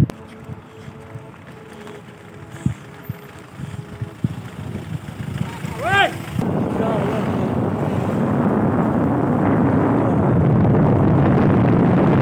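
Motorcycle riding along the road with wind buffeting the microphone, getting louder through the second half and loudest near the end. Before that, a quieter stretch with a low steady hum and a few knocks, broken about six seconds in by one short call that rises and falls in pitch.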